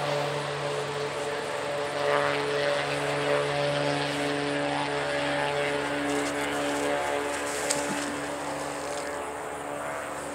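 A propeller plane's engine drones steadily overhead and fades after about seven seconds. A single short splash comes about three quarters of the way through, as the thrown magnet lands in the water.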